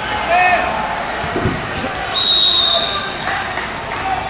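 A referee's whistle blows once for about half a second, a little past halfway, the loudest sound here. It follows a thud on the wrestling mat about a second and a half in, with voices shouting in the hall.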